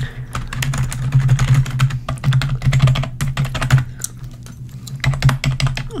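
Typing on a keyboard: a run of quick key clicks that thins out about four seconds in, then picks up again, as a date of birth is entered into the records.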